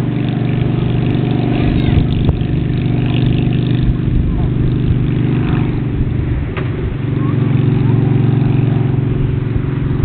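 An engine running steadily at a constant low pitch, easing off briefly about six to seven seconds in before coming back.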